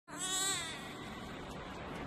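A short, high-pitched cry in the first half-second that falls in pitch, followed by steady background noise.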